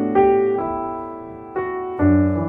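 Soft background piano music: notes struck and left to ring and fade, with a new chord about a quarter second in and another about a second and a half in.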